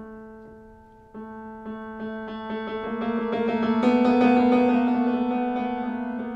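Solo piano: a chord fades away, then about a second in fast repeated notes start and build to a loud climax around four seconds in before easing off.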